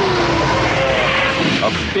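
Sci-fi film trailer sound effect: a loud, steady spacecraft engine roar with a whine that falls in pitch in the first half second.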